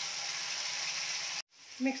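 Boiled black chickpeas frying in hot peanut oil in a metal kadhai: a steady sizzling hiss that cuts off suddenly about one and a half seconds in.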